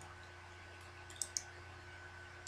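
Two quick, sharp clicks about a second in, made by the computer's input while an object is rotated in the software, over a faint steady hum.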